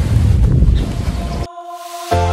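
Low rumbling noise on a phone microphone for about a second and a half, then steady held notes of background music start abruptly.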